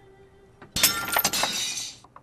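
A breakable ornament crashing down and shattering about three-quarters of a second in, with its pieces clattering and scattering for about a second.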